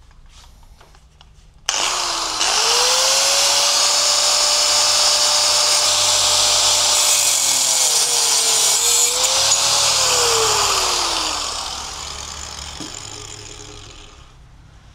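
Hand-held electric angle grinder switched on about two seconds in, its motor whine rising quickly to full speed, with a loud hiss from the disc. The pitch sags and recovers for a while as the disc bears into a flat steel bar. Near the end it is switched off and the whine falls away as it winds down.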